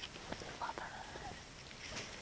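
Faint handling noise: a cotton t-shirt rustling as it is moved and set down, with small clicks, and a soft whispered murmur of voice about half a second in.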